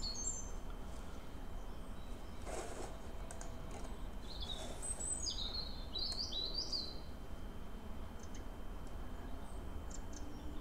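A bird's high chirps: one right at the start, then a quick run of short stepped notes about halfway through and a few faint ones near the end, over a steady low background rumble.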